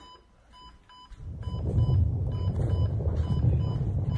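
Electronic beeping, short beeps about three a second at a few fixed pitches, joined about a second in by a loud low rumble that swells and then holds steady.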